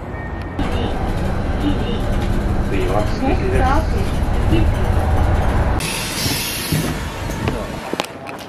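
Riding inside a city bus: a steady low rumble of engine and road noise with faint voices in the background, then about six seconds in a sharp hiss of compressed air lasting about a second from the bus's pneumatics.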